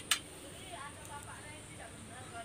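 Two quick clicks of small motorcycle engine parts being handled, right at the start, while the piston and its pin clips are readied for fitting; then a low background with faint distant voices.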